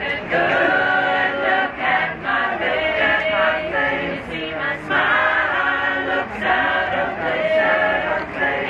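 Mixed choir of men and women singing together, unaccompanied.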